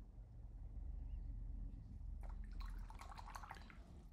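Paintbrushes being handled: a quick run of small clicks and light rattles starting about two seconds in and lasting about a second and a half, over a faint low room hum.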